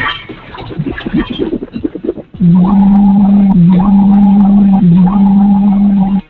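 A loud, sustained, low buzzing fart sound effect begins about two and a half seconds in and holds steady, dipping briefly twice, after a couple of seconds of jumbled noise.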